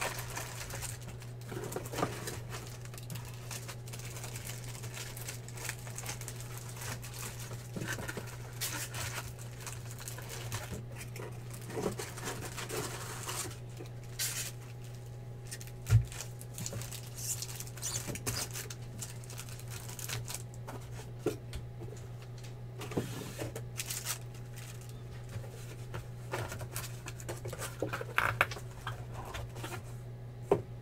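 Foil-wrapped trading-card packs rustling and crinkling as they are handled and sorted by hand, with cardboard boxes shifted on the table, over a steady low hum. A single sharp thump comes about halfway through.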